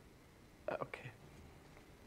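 A man says a soft, brief 'okay' about a second in; the rest is near silence, only room tone.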